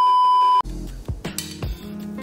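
Test-card beep: a loud, steady, single-pitch tone that cuts off about half a second in, followed by background music.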